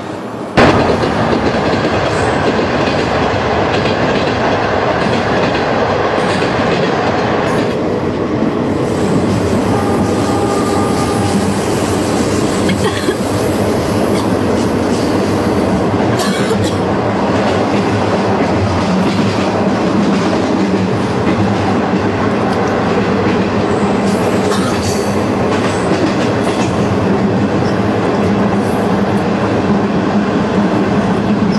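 Moving passenger train heard from inside a carriage: a loud, steady running rumble that cuts in abruptly about half a second in and carries on evenly, with a few brief sharper noises partway through.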